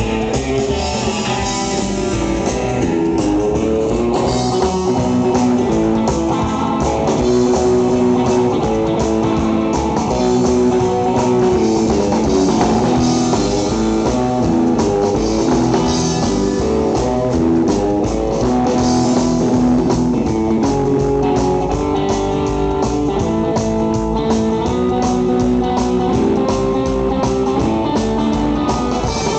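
Live rockabilly band playing an instrumental passage: red hollow-body electric guitar, upright double bass and a small drum kit, loud and steady with a driving beat.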